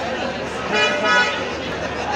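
A vehicle horn honks briefly about a second in, over a steady hubbub of street traffic and people's voices.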